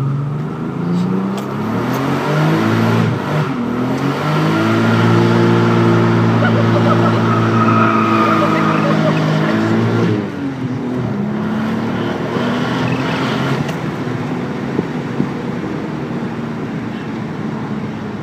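Stock twin-turbo 2JZ-GTE straight-six of a Toyota Aristo with automatic transmission revving hard for a burnout, heard inside the cabin. The revs climb unevenly over the first few seconds, hold high and steady for about six seconds, then drop sharply about ten seconds in and settle to a lower note.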